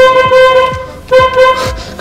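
2006 Mini Cooper's horn sounded twice from the steering-wheel horn buttons: a steady one-note honk that stops under a second in, then a second, shorter honk about a second later.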